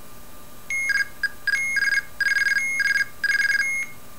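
Arduino-based blue box playing the IMTS mobile-telephone access sequence through a small speaker: a short seizure tone, then the guard tone, then the ANI number sent as bursts of rapid pulses that alternate between two tones, at 20 pulses a second. This is the signalling used to seize an idle IMTS channel and get a dial tone billed to another subscriber's number.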